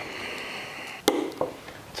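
Knives being handled on a leather knife roll on a table: one sharp click about a second in, then a fainter click shortly after.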